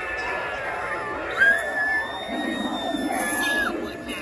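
A Halloween display's spooky sound effect: one long, high wailing scream that starts a little over a second in and holds steady for about two seconds, over a background murmur of voices.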